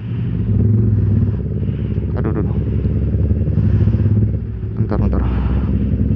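A motorcycle engine running steadily at low speed, heard from the rider's seat, with road and wind noise over it.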